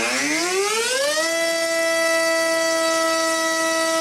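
Brushless electric motor of a Hobbyzone AeroScout S2 model airplane spinning a Master Airscrew Racing Series 6x4.5 propeller on a static thrust test. Its whine rises in pitch over the first second as it spools up, then holds a steady tone at speed.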